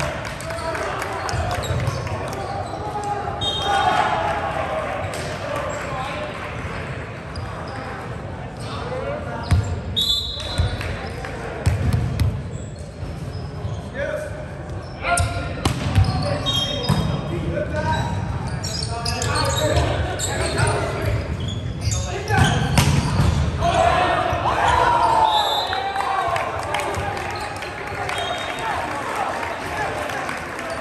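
Volleyball rally in an echoing gym: the ball is struck and hits the wooden floor in sharp smacks, several times over, while players shout calls.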